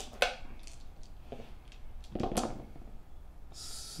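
Dice and miniatures being handled on a tabletop gaming mat: a sharp click just after the start, a few softer knocks, and a brief rattle near the end.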